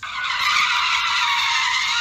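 Tyres of a BMW 3 Series sedan squealing steadily as the car slides on dry asphalt, a thin, high sound with no engine note heard.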